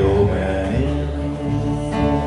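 Acoustic guitar strummed over plucked upright bass in a slow instrumental passage of a country ballad, with deep, sustained bass notes.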